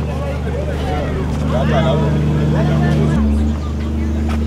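Steady low hum of the MV Ilala ferry's diesel machinery running while she lies at the quay. Its tone shifts suddenly about three seconds in, with people's voices over it.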